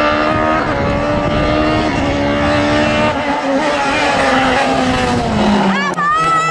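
Sports prototype race car engine heard at racing speed as the car comes up the hill. Its note falls slowly in pitch over several seconds, then about a second before the end jumps sharply to a high, loud note as the car comes past close by.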